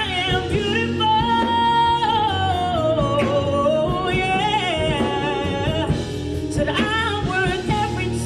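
A woman singing solo into a handheld microphone over an instrumental backing, holding long notes, sliding down and breaking into quick runs near the end.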